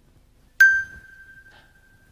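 A single high, bell-like chime struck once, ringing out and fading over about a second and a half.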